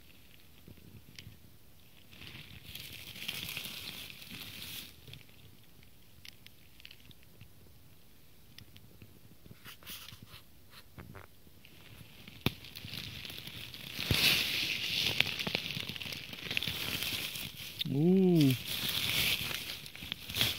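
Footsteps and rustling through dry fallen leaves and twigs. It is faint at first, with a few snapping clicks, then becomes louder, dense crackling and rustling in the second half. Near the end comes a brief hummed voice sound.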